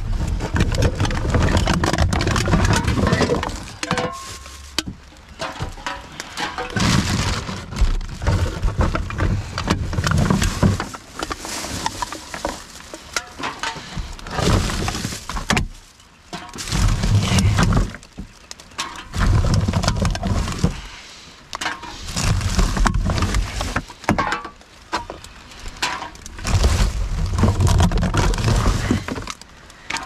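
Gloved hands rummaging through rubbish in a wheelie bin: plastic packaging and bags rustling and crinkling, with clicks, knocks and heavy bumps of containers and the bin being handled. The sounds come in bursts every few seconds, with short pauses between them.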